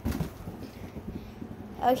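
Ceiling fan running with a low steady hum, with faint irregular knocks and rustles as its spinning blades bat at rubber party balloons.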